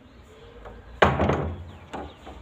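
Metal front door being opened: its handle and latch give one sudden loud clank with a short rattle about a second in, then a small click near the end.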